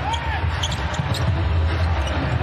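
Basketball dribbled on a hardwood court, over a low steady hum of the arena.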